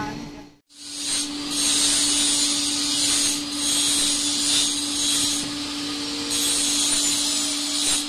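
Angle grinder grinding steel: a loud, continuous hiss that eases off and picks up again a few times as the disc is pressed and lifted, starting after a brief gap about half a second in.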